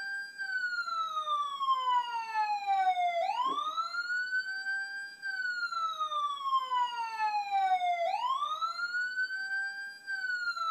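Emergency-vehicle siren wailing. The pitch climbs over about two seconds and slides back down over about three, and the cycle starts again about three and eight seconds in.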